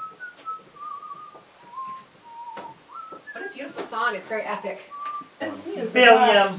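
A person whistling a short tune, one clear note at a time hopping up and down in pitch, with a few seconds of talk breaking in past the middle and one more whistled note after it.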